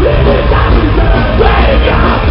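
A horror punk band playing loud and continuous live rock, with a voice singing and yelling over the guitars and drums. Recorded from the crowd with a camera microphone, so the sound is muffled and lacks its highs.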